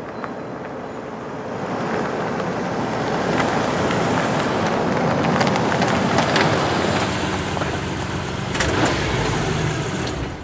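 Pickup truck driving past on a paved road: engine and tyre noise swell over the first couple of seconds, are loudest around the middle, then ease off, with a low engine hum in the last few seconds.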